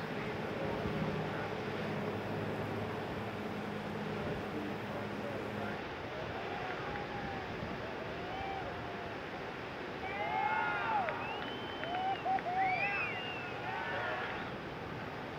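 Beach ambience: a steady wash of surf and wind. A low steady hum runs through the first half and cuts off suddenly near six seconds. In the second half comes a run of short high calls that rise and fall in pitch, loudest a few seconds before the end.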